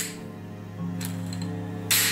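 Metallic clicks of a chrome revolver being handled, three sharp clicks about a second apart with the last the loudest, over a low, steady music drone.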